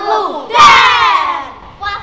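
A group of children shout together in unison, one loud shout starting about half a second in, lasting about a second and falling in pitch. It comes at the end of a chanted count and is a surprise shout meant to startle someone.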